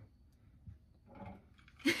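Quiet room with a soft knock a little over half a second in and a short, faint voice sound a little after one second in.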